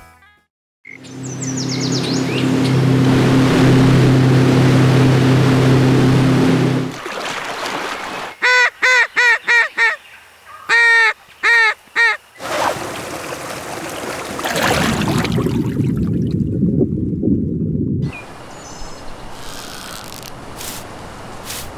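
A duck call blown in two quick runs of quacks, about two-thirds of the way through, with a loud steady rushing noise and low hum before them and more rushing noise after.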